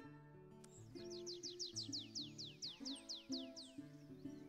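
A songbird singing a run of about seventeen quick, high downslurred whistles that slow as they go, over plucked acoustic guitar music.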